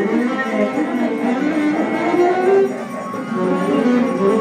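Live ensemble music, several instruments sounding at once with plucked strings to the fore, dipping briefly in loudness about three seconds in.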